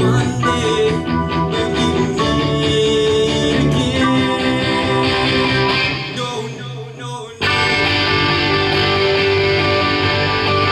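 Live rock band playing a passage without vocals, led by electric guitars. The sound thins and drops away about six seconds in, then the full band comes back in sharply about seven and a half seconds in.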